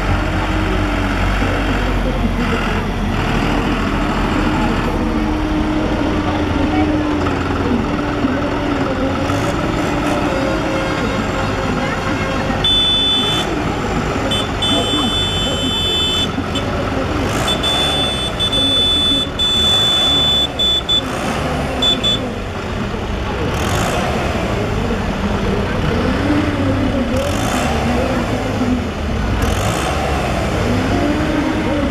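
John Deere farm tractors' diesel engines running as the tractors drive slowly past one after another, with voices alongside.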